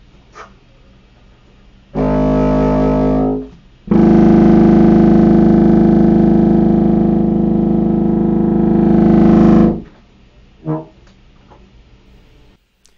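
Contrabassoon fitted with a low A-flat extension, played: a short low note of about a second and a half, then a long held low note of about six seconds that stops abruptly.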